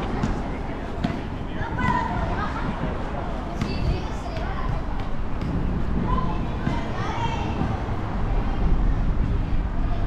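Background chatter of passers-by, children's voices among them, over a steady low rumble.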